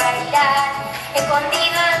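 A young girl sings a folk song into a microphone, accompanied by strummed acoustic guitars.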